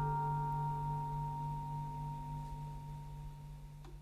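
The final chord of a live rock band ringing out and slowly fading away, a steady held chord with a deep low note beneath it. A faint click sounds near the end.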